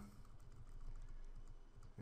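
Faint, repeated taps on a computer keyboard's arrow key, nudging the selected shapes upward.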